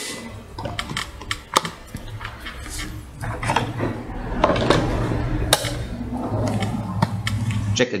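Red plastic scrubber caps on a Mares Horizon semi-closed rebreather being pressed into place and their wire clamps snapped shut: a string of sharp clicks and knocks. A low steady hum sits underneath from about halfway through.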